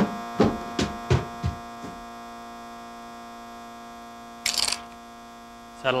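Electric football game board buzzing with a steady hum. Several short falling-pitch sounds fade out over the first two seconds, and a brief hissy burst comes about four and a half seconds in.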